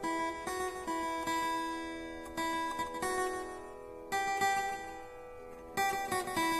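Acoustic guitar playing a slow unplugged introduction: chords and notes plucked every second or so, each left to ring and fade.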